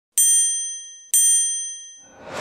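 Two bright bell-like dings about a second apart, each struck sharply and ringing out as it fades: chime sound effects of an animated channel-logo intro.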